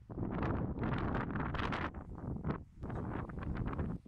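Gusty wind buffeting the microphone in irregular blasts, with brief lulls partway through.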